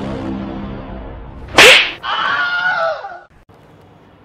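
A single loud slap-like crack about one and a half seconds in, followed by a wavering tone that falls away over about a second, over a low droning music bed.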